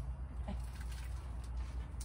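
Low steady hum, with faint rustling and a soft knock about half a second in.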